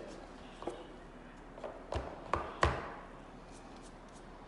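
A few light taps and knocks, the three loudest close together about two seconds in: a paper cup of paint flipped upside down and tapped down onto a stretched canvas.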